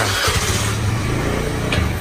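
A motor running steadily with a low hum, after a short click at the start.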